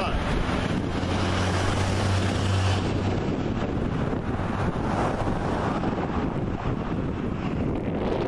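Wind buffeting the microphone: a steady rushing noise. A low, steady hum sits underneath it from about one to three seconds in.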